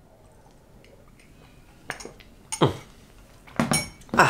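Drinking from a ceramic mug: quiet sips, then a few short, sharp clinks and knocks of the mug in the second half.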